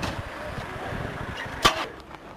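Outdoor background noise beside a car, broken by one short, sharp bang near the end.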